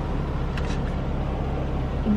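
Steady low rumble inside a car cabin from the idling engine, with one faint click about half a second in.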